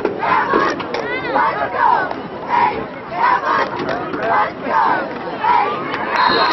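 Football crowd and sideline shouting and yelling during a play, many voices overlapping in short loud shouts that rise and fall.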